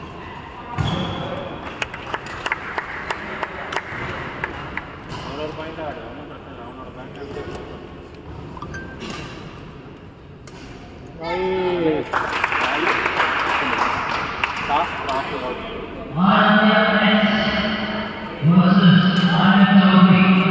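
Badminton rally in a large, echoing indoor hall: sharp clicks of rackets striking the shuttlecock over a background of voices. Near the end a loud, held voice sounds twice, like a chant.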